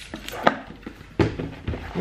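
Rigid cardboard pedal box being worked open by hand, its hinged lid lifting. There are three light knocks and some rustling.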